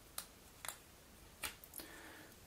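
Cardboard jigsaw puzzle pieces handled between the fingers, giving about four faint, sharp clicks as the pieces and fingernails tap against one another.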